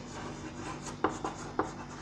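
Chalk writing on a blackboard: faint scratchy strokes, with three sharp chalk taps in the second half.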